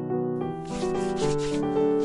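Fingers rubbing ground black pepper between them as it is sprinkled over a small whole fish: a run of short, dry rustles, over background piano music.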